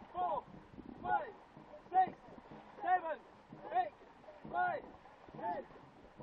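Short shouted calls in a steady rhythm, about seven of them a little over one a second, each falling in pitch: a stroke call keeping a dragon boat crew paddling in time, with faint water noise beneath.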